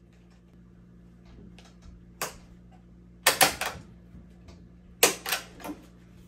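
Sharp clicks and clacks of a metal cap hoop being clamped around a foam trucker hat: one click about two seconds in, then a quick cluster about three seconds in and another about five seconds in, over a low steady hum.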